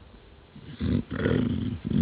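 An elderly man's low, gravelly voice, a word or a drawn-out syllable that starts about half a second in.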